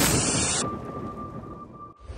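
Storm sound effect of rumbling thunder and rain noise fading away, leaving a thin, steady, high ringing tone that comes in about half a second in. Everything cuts out suddenly at the end.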